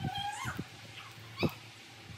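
An animal, most likely a household pet, calls twice: a rising cry in the first half second and a short, higher cry about one and a half seconds in. Under it is the light rustle and snap of leaves being stripped from their stems by hand.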